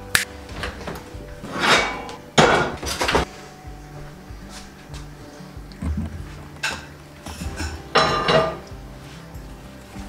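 A run of separate clatters and knocks of kitchenware being handled on a counter and stove, a few with a short metallic ring, over soft background music.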